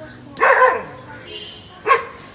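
A dog barking twice: a longer bark with a falling pitch about half a second in, and a short bark near the end.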